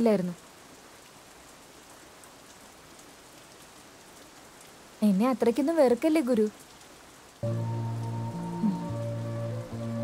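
A steady, even hiss like falling rain under a film soundtrack, broken by a short spoken line about halfway through. Soft background music of sustained chords comes in about seven seconds in.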